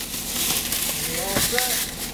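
Paper flour bag rustling and crinkling as it is handled, over a low steady hum.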